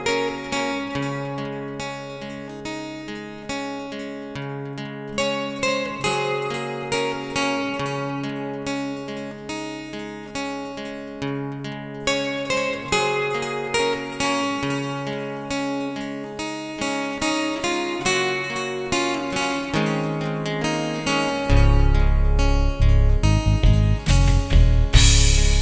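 Instrumental song intro on acoustic guitar, plucked notes ringing in a steady flowing pattern. A deep bass comes in near the end.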